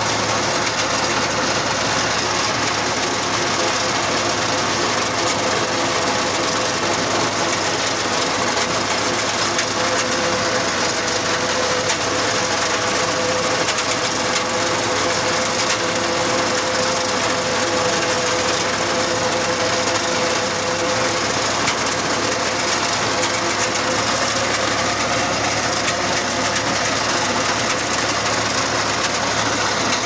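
Crop reaper running steadily while cutting standing crop: its engine drone mixed with the dense, fast clatter of the reciprocating cutter-bar knife, even throughout, with a steady hum over it.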